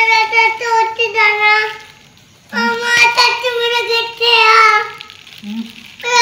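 A young child singing in a high voice, in two phrases with a short break about two seconds in.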